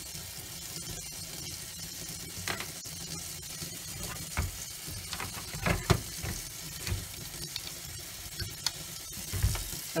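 Kitchen tap running steadily into a stainless-steel sink, with a scattering of clicks and knocks as plastic printer parts are handled, the sharpest about six seconds in.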